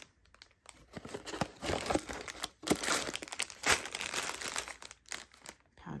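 Clear plastic pouches of Lego pieces crinkling as they are handled and one is pulled from the cardboard box, with irregular rustles and scattered sharp clicks.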